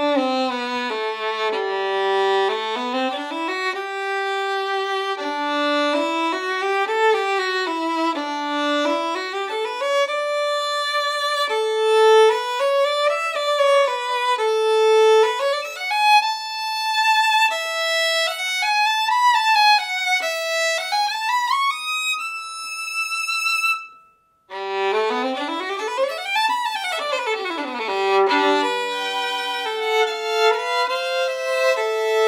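Holstein Traditional Red Mendelssohn violin played solo with vibrato: a bowed melody climbs steadily into the high register. It breaks off briefly about three quarters of the way through, then resumes with a fast run up and back down over a held lower note.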